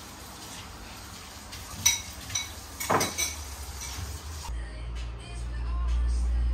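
Dishes and cutlery clinking in a kitchen sink during washing up, with a few sharp ringing clinks about two and three seconds in. Near the end a steady low hum takes over.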